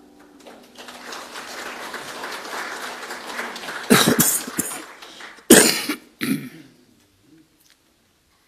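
Congregation clapping for a few seconds after the music stops, then three loud coughs close to a microphone starting about four seconds in.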